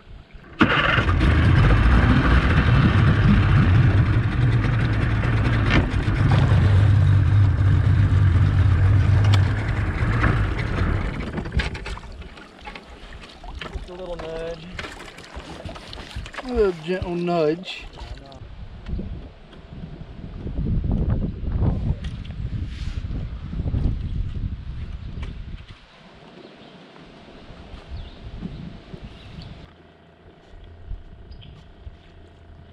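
Boat's outboard motor running steadily with the boat underway, starting abruptly just after the start and dying away after about ten seconds; a person's voice follows briefly without clear words.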